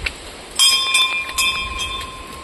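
Metal temple bell rung repeatedly, about four clanging strikes in quick succession starting about half a second in, each leaving a bright ringing tone.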